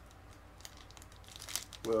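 Candy wrapper crinkling as it is unwrapped by hand, mostly in a short burst of crackles about a second and a half in.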